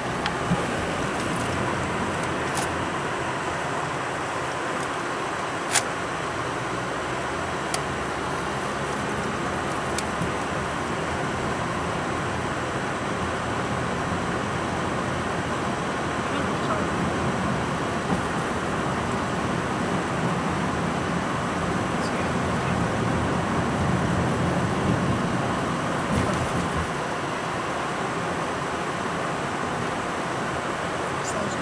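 Steady road and tyre noise heard inside a moving car's cabin, with a few sharp clicks in the first ten seconds, the loudest about six seconds in.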